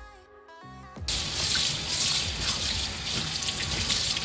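Kitchen tap turned on about a second in, water running into a stainless-steel sink and splashing over a pan lid being rinsed under it. Soft background music plays before the water starts.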